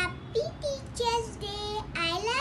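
A young girl singing a short tune, a string of held notes that step downward in pitch.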